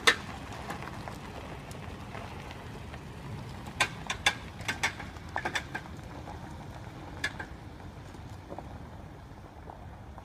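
Toyota Tacoma pickup driving slowly over gravel towing an empty personal-watercraft trailer: a steady low engine and tyre rumble with scattered sharp clicks and knocks, most of them about four to six seconds in.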